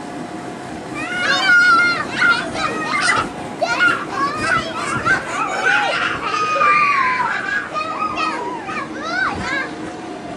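A group of young children shouting, squealing and chattering in excited high-pitched voices while they play.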